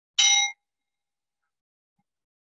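A small bowl bell struck once with a striker: a bright ding of several clear ringing tones, cut off abruptly after about a third of a second. It is the cue to come out of the final resting pose (savasana).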